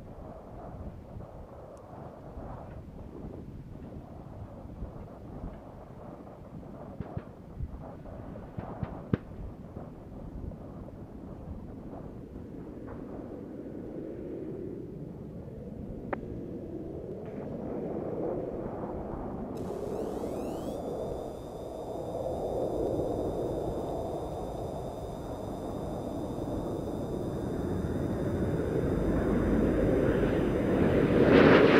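Low rushing, rumbling air noise with scattered crackles and pops, growing steadily louder toward the end. A faint set of steady high-pitched whines comes in about two-thirds through.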